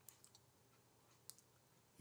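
Near silence with a few faint clicks, the strongest a little over a second in.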